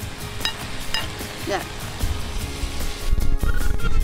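A metal spatula clinks twice against a plate and frying pan as a vegetable stir-fry is served, over background music. A low rumble comes in near the end.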